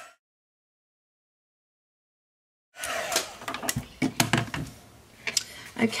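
Dead silence for almost three seconds, then light rustles, taps and clicks of card stock panels being picked up and moved about on a craft mat.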